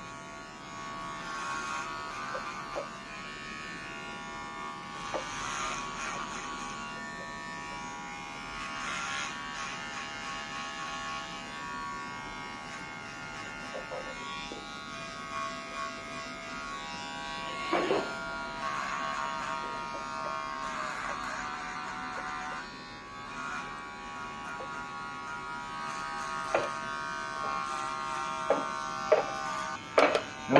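Electric hair clippers buzzing steadily as they shave the nape for an undercut. There is a sharp click about eighteen seconds in and several more near the end.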